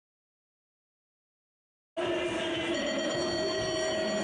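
Dead silence for the first two seconds, then a steady background hum of an indoor BMX arena, with a couple of held low tones, cuts in abruptly about halfway through.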